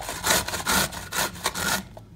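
Cauliflower florets grated by hand on the coarse side of a flat stainless-steel grater: quick rasping strokes, about four or five a second, stopping just before the end.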